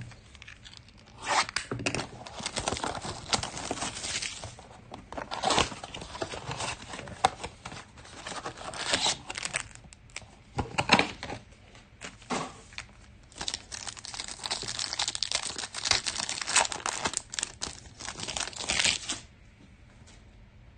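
Plastic wrap torn off a trading-card blaster box and a foil card pack ripped open by hand: a run of crinkling tears and rustles that stops about a second before the end.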